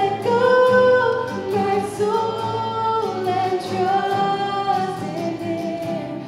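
A woman sings a worship song in long held notes, accompanying herself on a strummed acoustic guitar.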